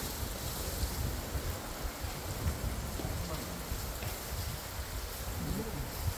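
Wind rumbling on the microphone with an even outdoor hiss, and a short burst of voice near the end.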